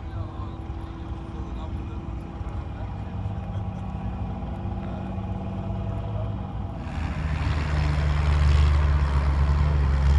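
An engine running steadily, with voices in the background. About seven seconds in, a louder, deeper engine sound takes over.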